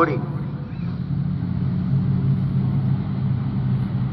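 Engines of 1200 junior sedan race cars running at low revs as they circle the dirt speedway under caution, a steady drone.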